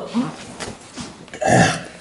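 A man gagging, with one loud rough retch about one and a half seconds in, after a bite of boiled pig tongue; a short laugh comes before it.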